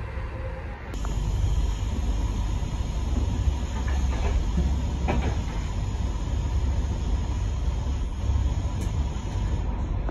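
Passenger train running at speed, heard from inside the compartment: a steady low rumble of wheels and carriage with a few faint knocks. The noise shifts slightly about a second in.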